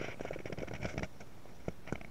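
Handling noise from a handheld camera being panned: a quick run of crackling, rustling clicks for about a second, then two separate sharp clicks near the end.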